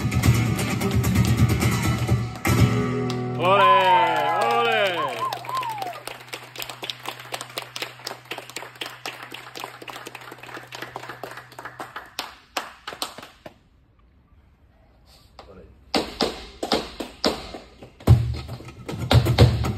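Live flamenco: guitar, then a sung phrase with long bending, ornamented notes a few seconds in, followed by a long run of rapid sharp percussive taps. The taps break off into a brief near-silence about two-thirds of the way through, then resume near the end.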